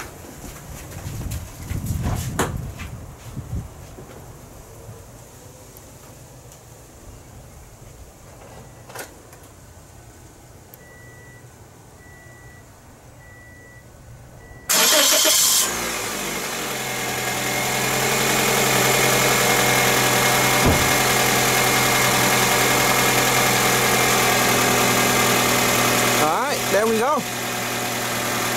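A Toyota Corolla's 1.8-litre four-cylinder engine is cranked by its starter and catches within about a second, about halfway through. It then runs at a steady idle.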